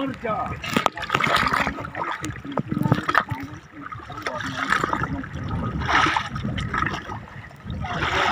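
Sea water splashing and sloshing as a fishing net is hauled in beside a bamboo raft, with a swimmer moving in the water at the net. Men's voices talk and call over it.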